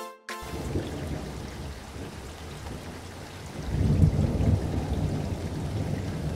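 Wind buffeting the microphone outdoors: a rough, uneven low rumble that grows louder a little past halfway.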